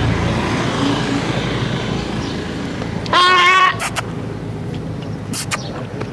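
A goat bleats once, a short wavering call about three seconds in, over a steady background hum of road traffic.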